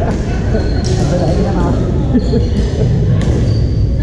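Busy badminton hall: a steady mix of voices across the courts, sneakers squeaking briefly on the hardwood floor a few times, and scattered sharp hits from play on neighbouring courts, all echoing in the large room.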